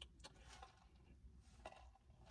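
Near silence, with a few faint short clicks.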